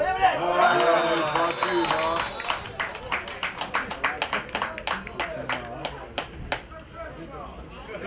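Players and onlookers at a football match shouting, with a high steady whistle tone held for about two seconds, then a quick run of hand claps that thins out, marking a goal just scored.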